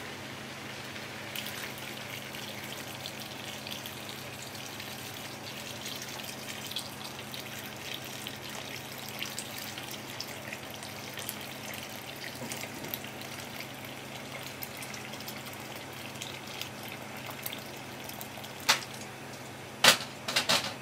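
Tap water running into a metal pot of cut daikon radish, splashing over the pieces as the pot fills, with a steady low hum underneath. Two sharp knocks come near the end.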